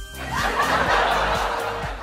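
A burst of laughter lasting most of two seconds, over background music.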